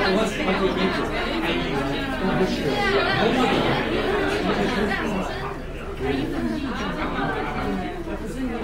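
Crowd chatter: many people talking at once in a large room.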